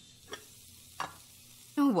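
Meatballs sizzling in hot oil in a frying pan, a steady hiss, with two light knocks of the glass lid and spatula against the pan about a third of a second and a second in.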